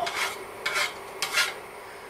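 A blade scraping chopped garlic across a wooden cutting board and off into a pot, in three short strokes.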